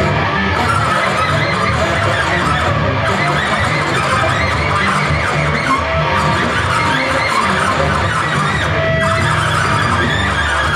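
Live free-improvised noise music from alto saxophone, electric guitar and bass guitar: a dense, continuous mass of sound with a steady low layer and many short, shifting high tones. A single held tone sounds briefly near the end.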